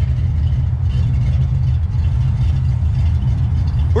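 Chevrolet Chevelle's 350 V8 idling steadily through its dual exhaust with Flowmaster-style mufflers, a low, even rumble.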